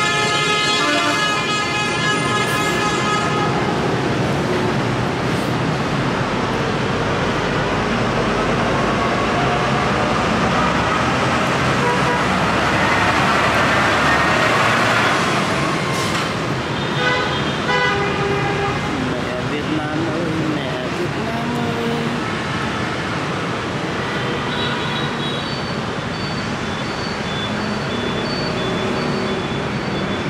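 Road traffic noise, with a horn sounding for the first few seconds and a vehicle passing louder around the middle; short repeated high beeps come in near the end.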